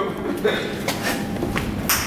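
Indistinct voices and shuffling in an echoing underground car park, with a sharp knock just before the end.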